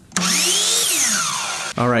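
A burst of power-tool whirring about a second and a half long, its pitch sweeping up and then back down, starting and stopping abruptly.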